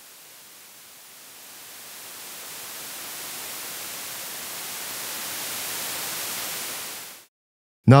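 White noise from a Eurorack modular synth, its volume set by a VCA under control voltage from the patch.Init() module's knob, swelling slowly louder as the knob is turned up: the CV output is working. It drops away quickly about seven seconds in.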